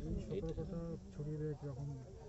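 A man's voice talking in drawn-out syllables, each held at a steady pitch.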